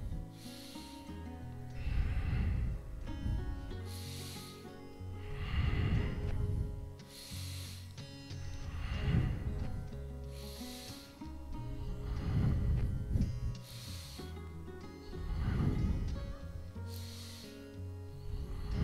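A man breathing hard and rhythmically with exertion: a hissing inhale followed by a heavier, rumbling exhale, the cycle repeating about every three seconds as he lifts and lowers his chest and legs in a back-extension exercise. Soft background music plays underneath.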